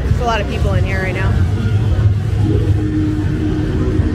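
Scare-zone ambience: a loud, deep, steady rumble, with a voice calling out in wavering pitch for the first second and a half and a steady low hum setting in about halfway through.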